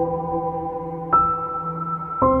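Slow, calm piano music with long ringing notes; a new, higher note is struck a little over a second in.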